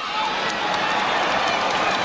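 A crowd applauding steadily, a dense patter of many hands.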